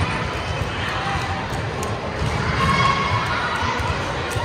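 Spectators in a gymnasium chattering and calling out during a volleyball match, the voices getting louder about two seconds in, with occasional sharp knocks from the court.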